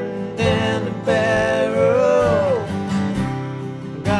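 Acoustic guitar strummed while a man sings over it, holding one long note through the middle and letting it fall away.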